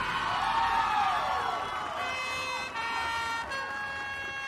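A marching band ensemble plays overlapping sliding pitches that arch up and down over each other like sirens. From about halfway, held notes enter one after another and stack into a chord.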